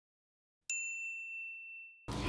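A single bright ding, a logo sound effect, struck about two-thirds of a second in and ringing out, fading over about a second.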